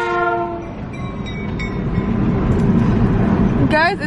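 Napa Valley Wine Train passing close by, heard from inside a moving car: a loud horn blast that fades out within the first second, then a steady rumble of the train and road noise.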